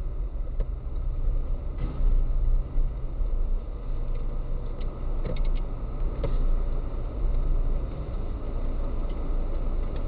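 Car engine and cabin noise picked up by a dashcam inside a slow-moving car: a steady low hum with a few faint, irregular clicks.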